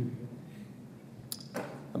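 A pause in a man's speech into a handheld microphone: low room tone, a short mouth click, then a quick intake of breath just before he speaks again.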